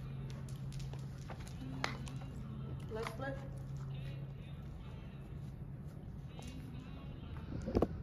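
Scattered thumps and knocks of a dancer's feet and body on a wooden stage floor as she goes down to the floor, the loudest knocks near the end. Faint voices and a steady low hum lie underneath, the hum stopping about halfway.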